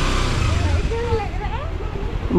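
Kawasaki Ninja 300 parallel-twin engine running steadily at low speed as the bike rolls along, with a faint voice heard briefly about a second in.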